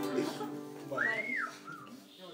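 The final chord of a folk song with acoustic guitar fading out. About a second in, a short whistle rises and falls, followed by a briefer, lower one.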